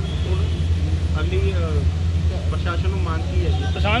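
A steady low rumble under faint voices of people talking.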